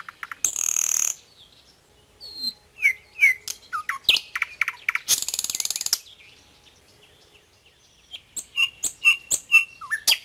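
Songbirds chirping in short curved calls, with a quick run of repeated notes near the end. Footsteps crunch on gravel in two short spells, about half a second in and again about five seconds in.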